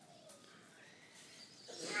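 Mostly quiet outdoor background with faint, thin pitched traces, then a child starts speaking near the end.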